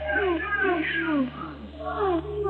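Young women's voices on live stage microphones, the backing track stripped out: a run of short, falling vocal slides, about three a second, over a low steady hum.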